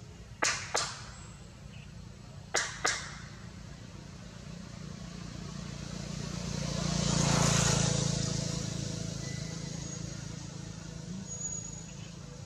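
A road vehicle passing by, its low engine hum and tyre hiss rising to a peak about seven seconds in and then fading away. Before it come two pairs of sharp cracks, one pair near the start and one about two seconds later.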